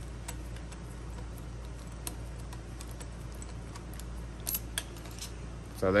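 Phillips screwdriver backing out the mounting screws of a Schlage F-series door knob: faint, scattered metal ticks and clicks, with a couple of sharper clicks about four and a half seconds in, over a low steady hum.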